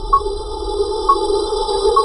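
Electronic intro jingle: a steady synthesized drone with a short high ping about once a second, three pings in all.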